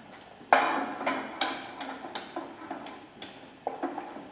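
A spoon knocking and scraping against a stainless steel saucepan while mashed potato and cream are stirred. There is a sharp knock about half a second in, then lighter irregular clicks.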